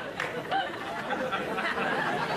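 Studio audience laughing and murmuring in reaction to a joke's punchline.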